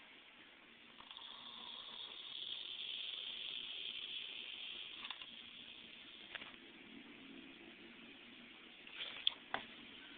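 A 680 µF 25 V electrolytic capacitor overvolted on a 63 V supply, hissing as it overheats and vents. The hiss swells over a couple of seconds and dies away about five seconds in. A few faint clicks follow near the end.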